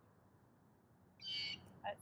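A short high-pitched bird call a little over a second in, over faint background hiss.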